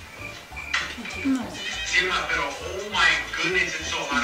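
A TikTok clip playing through a phone speaker: a faint cricket-chirp sound effect in the quiet first moment, then a voice over background music.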